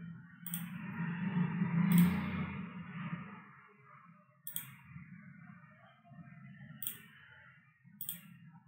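Computer mouse clicks, about four, spaced a second or two apart, over a faint low hum and hiss.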